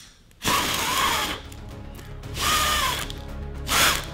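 A man blowing hard to put out birthday candles: three strong blows of breath close to the microphone, the first two long and the last short.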